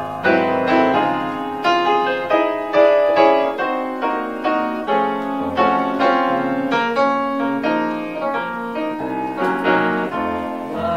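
Grand piano played solo: a steady run of struck notes, melody over chords.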